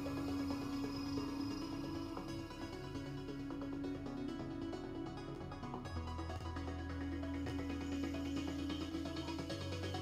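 Electronic background music: a sustained mid-range tone over a low bass line that shifts about six seconds in.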